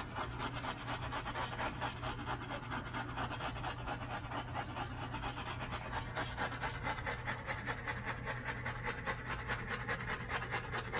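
Handheld butane torch burning with a steady, rapidly fluttering hiss as its flame is passed over wet acrylic pour paint.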